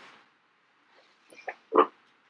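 A quiet stretch, then three or four short, soft vocal noises from a person about a second and a half in, not words.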